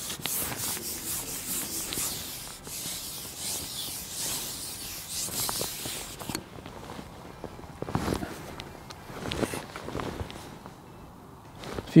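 Carbon fishing pole being shipped back hand over hand with a fish on, the pole sliding and rubbing with a steady hiss for about six seconds, then a few light knocks and clicks.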